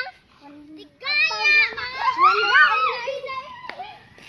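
Children's voices, high-pitched calls and shouts while playing, loudest from about a second in until near the end.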